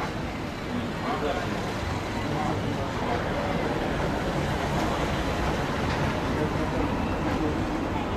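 Steady city street noise with traffic running and faint, indistinct voices.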